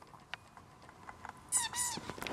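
A Yorkshire terrier gives a short, high whine in two quick rising-and-falling notes about a second and a half in, after a quiet stretch with faint rustles.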